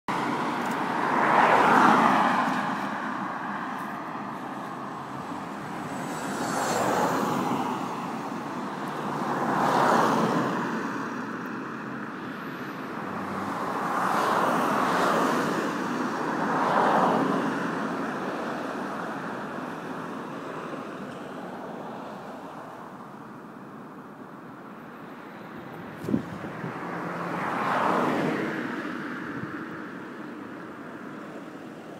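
Road traffic on a 40 mph dual carriageway: cars and vans drive past one after another, each pass swelling and fading, about six in all. There is a single sharp click late on.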